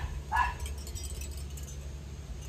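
A small dog giving one short yip about half a second in, over a steady low background hum.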